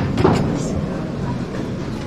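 Steady hum of an airliner cabin interior, with a sharp click right at the start and a short knock just after.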